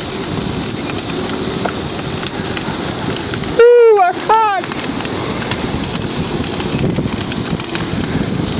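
Large bonfire of wood and furniture burning hard, a steady rushing crackle with many small pops. About three and a half seconds in, a person lets out two loud, short cries that fall in pitch.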